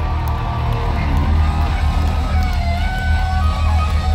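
Live glam metal band playing loudly, electric guitars and bass over a heavy low end, recorded from the audience.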